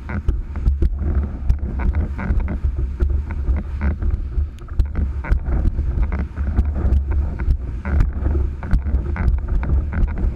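Wind buffeting the microphone in a heavy low rumble, over water rushing and splashing off the bow of the Witchcraft 5.9 prototype catamaran as it sails, with frequent short slaps and ticks of spray.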